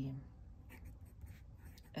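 Faint scratching of a fine-nibbed Esterbrook Estie fountain pen on paper, a few short strokes as a word is written.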